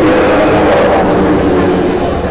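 A large crowd cheering, loud and steady.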